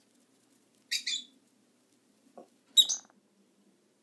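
Pet lovebirds chirping in a cage: a short, high double chirp about a second in, and a louder, sharp chirp near three seconds.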